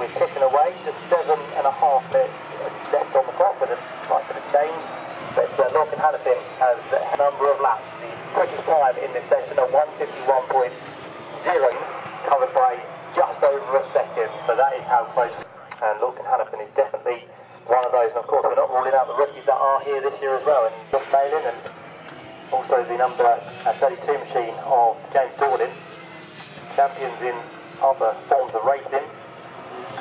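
Circuit public-address commentary: a man's voice talking almost without pause, with only short breaks.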